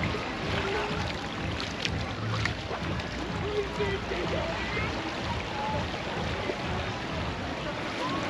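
Outdoor beach ambience: a steady wash of noise with faint, scattered voices of people in the distance and a few light clicks.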